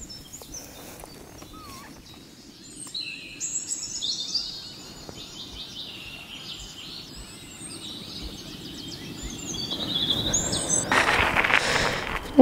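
Birds chirping and calling over a steady outdoor background hiss, many short high chirps and whistles overlapping. Near the end a rush of noise builds and grows louder.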